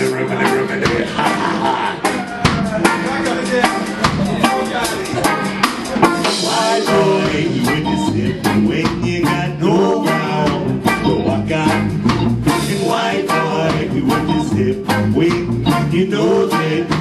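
Live ska band playing the opening of a song: drum kit keeping a steady beat under guitar and melodic lines.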